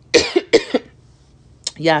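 A woman coughs twice in quick succession, short and harsh: she is choked up, which she puts down to cereal stuck in her throat.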